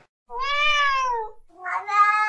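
A cat meowing twice: the first meow long and arching up then down in pitch, the second lower and steadier, starting about a second and a half in.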